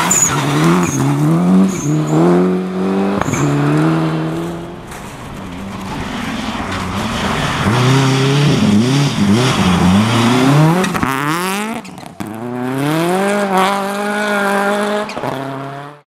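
Mitsubishi Lancer Evolution rally cars' turbocharged four-cylinder engines revving hard, the pitch climbing and dropping again and again with gear changes and lifts of the throttle. One car goes past, then after a lull a second approaches and passes, and the sound stops abruptly at the end.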